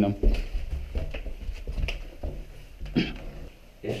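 Footsteps and camera handling noise from someone walking with a body-worn camera, with low indistinct voices and a few light knocks.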